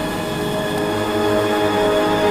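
Speedway bike engines held at high revs at the start line, growing slightly louder, mixed with a sustained swell of music.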